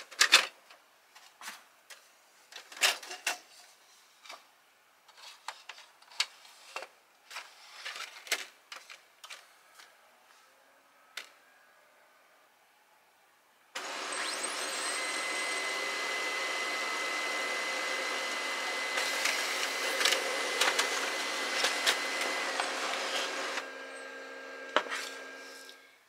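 Brother HL-L2350DW laser printer. First come a series of clicks and knocks as its manual feed slot is handled and cardstock is fed in. About 14 s in, the printer starts up and runs steadily for about ten seconds with a steady whine while it pulls the card through and prints it in toner, then goes quieter near the end.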